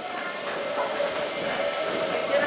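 Matterhorn Bobsleds car travelling along its steel track, a steady rattling rumble of the wheels on the rails.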